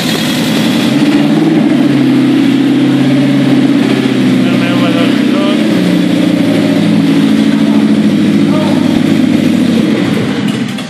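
BMW 2002's M10 inline-four engine running steadily on its first start after standing for more than 12 years, fresh from new oil, filters, spark plugs, distributor and points.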